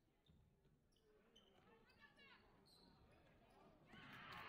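Faint basketball game sounds in a gym: a basketball dribbled on the hardwood court, with a faint shout of players' voices about two seconds in.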